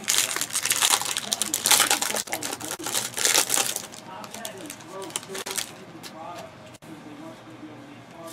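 Plastic wrapping of a trading-card mini box being crinkled, crushed and torn off, a dense run of crackles for about four seconds, then quieter rustling as the cards are slid out and handled.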